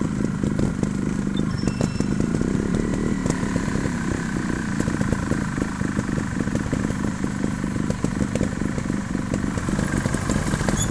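Trials motorcycle engine running steadily, with no clear revving rises.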